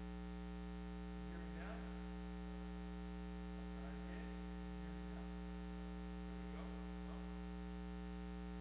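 Steady electrical mains hum with a stack of overtones on the sound system's feed, with faint low voice sounds a few times.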